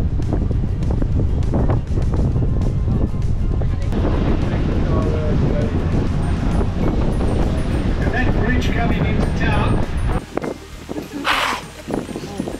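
Wind rumbling on the microphone of a tour boat under way on open water, with background music. The rumble stops abruptly about ten seconds in, and a short hiss follows near the end.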